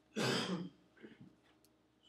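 A man coughs once, a short throat-clearing cough lasting about half a second, just after the start.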